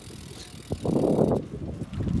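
BMX bike rolling over pavement: tyre noise that swells to a rush about a second in, with a click just before it.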